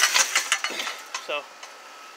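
Rattling and clanking of a rusty steel trailer rail as a hand grips it and the man climbs up onto the trailer; a dense clatter at the start, then a few lighter knocks.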